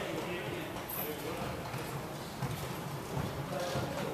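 Irregular knocks of a basketball bouncing and sports wheelchairs moving on a wooden sports hall floor during wheelchair basketball play, with players' voices in the hall.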